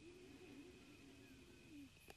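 Near silence: faint room tone with a steady high whine and a soft, low, wavering coo, as of a dove, fading out near the end.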